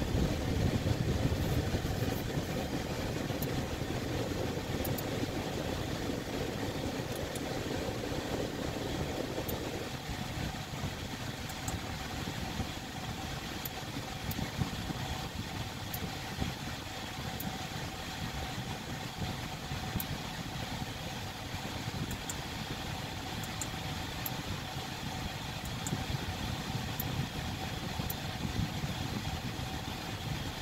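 Audi S5's 3.0 TFSI V6 idling steadily, heard from inside the cabin. Its note drops slightly about ten seconds in.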